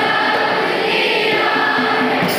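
A large group of schoolchildren singing a prayer together in unison, with held notes.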